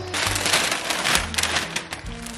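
Plastic mailer bag and paper packaging crinkling in quick, dense crackles as a present is pulled open, over background music.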